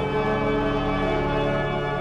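Cathedral pipe organ playing sustained chords.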